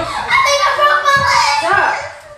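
Excited, high-pitched voices yelling and shrieking with no clear words, loud throughout, with a sliding cry near the end.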